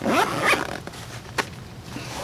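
Zipper of a Vanquest EDC Maximizer pouch being pulled open in one quick rasping run, followed by a single sharp click about a second and a half in.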